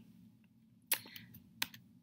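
Computer keyboard keys clicking: two sharp key presses, about a second in and again near the end, with a fainter tap between.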